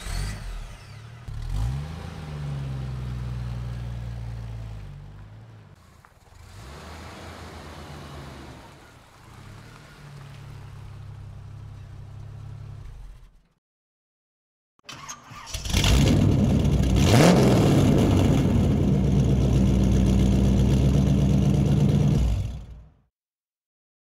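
Car engine sound effects. One engine starts, revs up briefly, then idles more quietly and cuts off about halfway through. After a short silence a second, louder engine starts, revs up sharply once and runs steadily before stopping shortly before the end.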